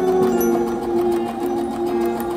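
Husqvarna Viking Designer 1 sewing machine running and stitching through cotton canvas in a fast, even rhythm, under background music with held notes.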